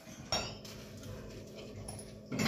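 Steel dishware clinks once about a third of a second in, with a short metallic ring.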